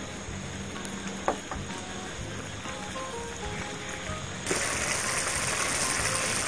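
Coconut milk and curry paste sizzling and bubbling in a large stainless-steel pot as it is simmered until the oil separates, with two light clicks a little over a second in. About four and a half seconds in, a louder, brighter hiss sets in.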